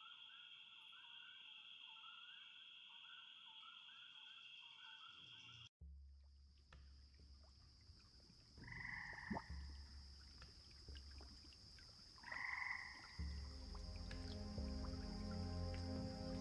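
Faint recorded marsh ambience: frogs calling in a pulsing chorus over a steady high insect trill. About six seconds in it cuts to another ambient track with a steady high trill over a low rumble and two short calls, and a low musical drone comes in near the end.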